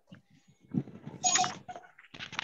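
A short animal call lasting about a second, starting a little under a second in, heard over a video call's audio.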